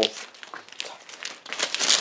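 Tape and plastic sheeting being peeled off a glass aquarium's trim, crinkling and crackling irregularly and loudest near the end.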